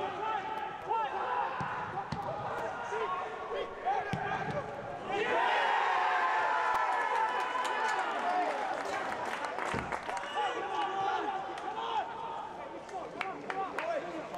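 Footballers shouting and calling to each other on the pitch of an empty stadium with no crowd, with sharp thuds of the ball being kicked. About five seconds in, a louder burst of shouting as players celebrate a goal lasts a few seconds.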